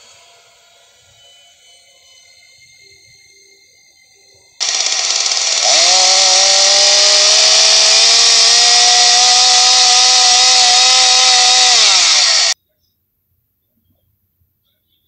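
A chainsaw starts suddenly and loud, its pitch climbing as it revs up to full throttle. It holds at full speed for about six seconds, then drops slightly and cuts off abruptly.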